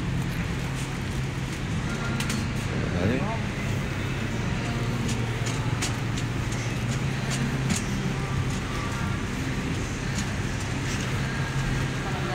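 Shopping cart rolling across a tiled store floor: a steady low rumble from the wheels with scattered clicks and rattles from the wire basket.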